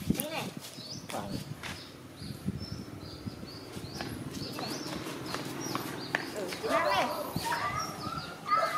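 Dog sucking milk from a baby bottle, with repeated wet smacking clicks, while short bird chirps sound in the background. A brief high wavering call rises out of it about seven seconds in.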